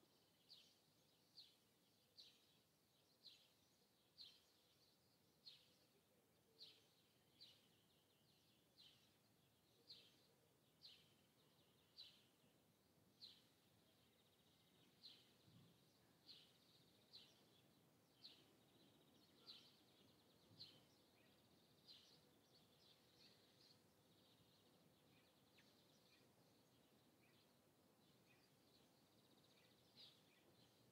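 A bird calling faintly over near silence: short, high, downward-sliding chirps repeated about once a second, thinning out and fading in the last several seconds.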